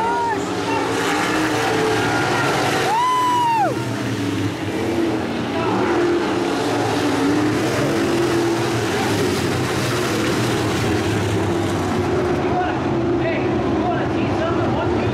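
Dirt-track modified race cars' V8 engines running around the track in a steady mixed drone. A short high tone that rises and falls comes about three seconds in.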